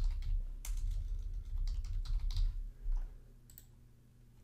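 Typing on a computer keyboard: a quick irregular run of keystrokes for about three seconds, then stopping.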